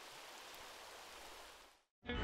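Near silence: a faint, steady hiss that fades out to total silence near the end.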